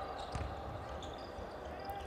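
Faint game sound on a basketball court: a ball bouncing on the hardwood floor over low ambience in a sparsely filled hall.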